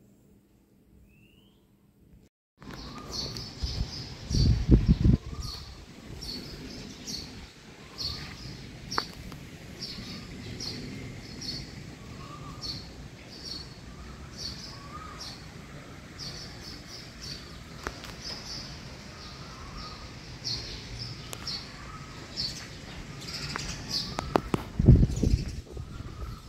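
Small birds chirping outdoors: many short, high chirps repeat steadily, with a second bird giving short lower call notes now and then. Two brief bursts of low rumble are louder than the birds, one about four seconds in and one near the end. The first couple of seconds are near silent.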